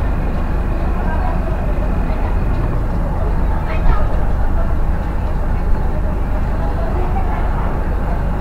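Steady, loud background rumble and hiss with indistinct voices mixed in, and a brief sharper sound about four seconds in.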